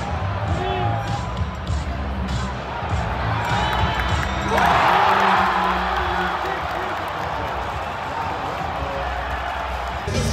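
Basketball arena crowd noise with music playing over the arena's sound system, swelling into loud cheering about halfway through.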